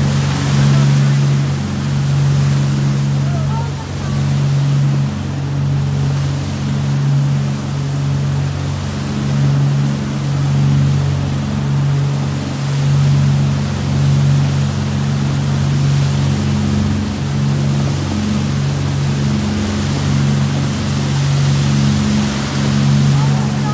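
Motorboat engine running at speed with a steady low hum, over the rush and splash of the churning wake water.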